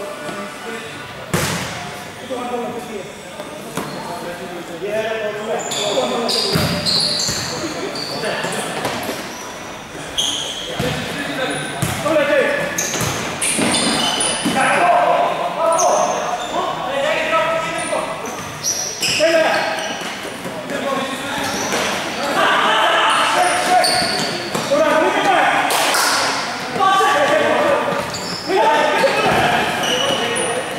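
Futsal ball being kicked and bouncing on an indoor court, sharp thuds echoing around a large sports hall, among the shouts of players.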